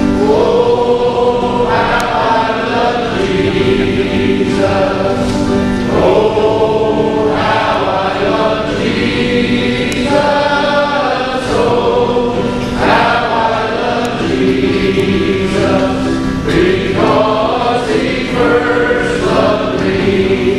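A group of men's voices singing a hymn together in sung phrases of about two seconds, leading a congregational song.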